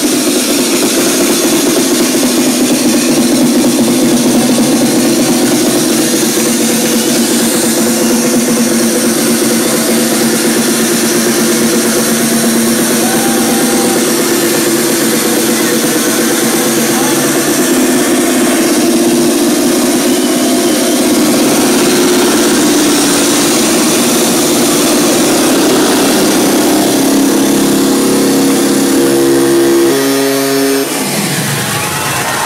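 Loud techno playing over a club sound system, heard from the DJ booth with little deep bass and a steady drone in the lower midrange. Near the end a run of short stepped tones comes in.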